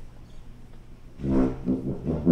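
Quiet hall noise with a faint low hum, then about a second in a tuba and euphonium quintet comes in with its opening notes: one loud brass chord followed by a couple of shorter detached notes.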